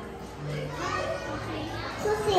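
Young children's voices talking indistinctly in a large hall, with no clear words.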